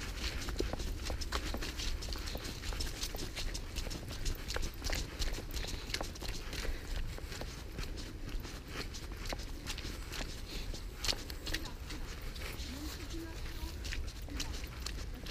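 Brisk footsteps on a wet, muddy path, a quick irregular run of crunching and squelching steps, over a low rumble of wind or handling noise on the microphone.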